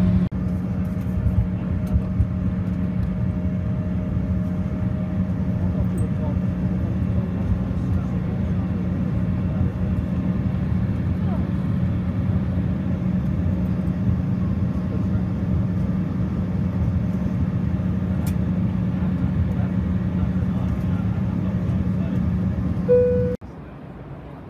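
Cabin noise inside an Embraer 175 regional jet taxiing at idle thrust on its GE CF34 turbofans: a steady low hum over a constant rush of engine and air noise. Near the end a brief tone sounds, then the sound cuts off abruptly to a quieter background.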